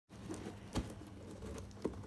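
Hands handling a taped cardboard parcel: scratching and light tapping on the cardboard, with two sharper knocks, one just under a second in and one near the end.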